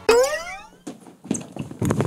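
A cartoon boing sound effect that slides up in pitch for about half a second, followed from about a second in by quick, hurried footsteps and scuffling.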